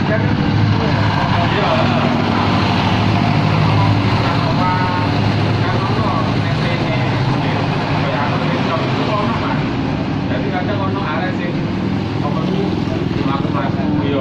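Road traffic with motor vehicle engines running steadily and a constant low hum throughout. People's voices are heard now and then over it.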